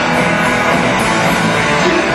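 Live rock band playing an instrumental passage between vocal lines, guitar to the fore over a steady, loud full-band sound.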